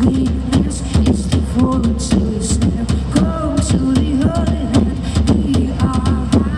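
Live pop band playing an instrumental passage: a steady drum-kit beat over heavy bass, with a melodic line coming in about three seconds in.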